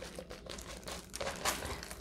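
Diamond painting canvas in its clear plastic film rustling and crinkling as it is handled and unrolled, in a run of irregular small crackles.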